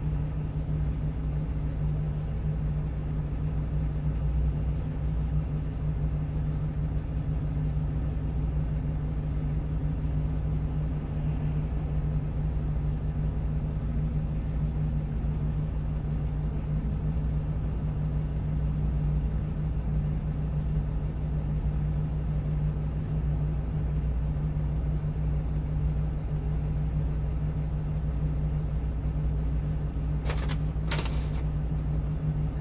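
A 1-ton truck's engine idling steadily, a low even hum heard from inside the cab while the truck waits in traffic.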